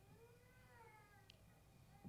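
Faint squeak of a marker on a whiteboard during writing: one drawn-out, high, wavering squeal that rises and falls, with a light tick about halfway through, against near silence.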